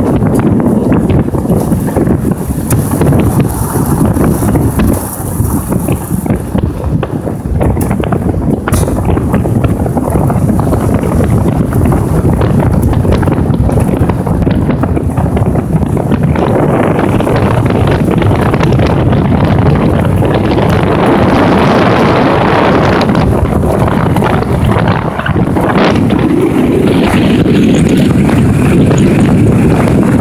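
Heavy wind buffeting on the microphone of a moving vehicle, over the vehicle's running and road noise. The rushing turns hissier about halfway through.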